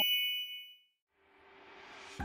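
A bright bell-like ding, struck just before and ringing out over about half a second, then near silence with a soft hiss slowly rising near the end.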